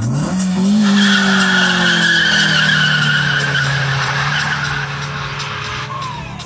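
A car engine revs up sharply and is held at high revs, its pitch slowly sinking, while the tyres squeal in a long wheelspinning skid from about a second in until near the end.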